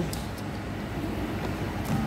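Steady low rumble of restaurant background noise, with a faint tick or rustle just after the start and another near the end.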